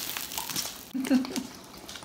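Light clicks and scrapes of a metal fork and knife handling a cooked chicken breast on the cooker's nonstick plate and a paper plate, as the sizzling dies away at the start. A short vocal sound about a second in.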